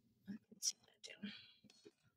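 Faint whispered muttering: a few soft, breathy syllables under the breath.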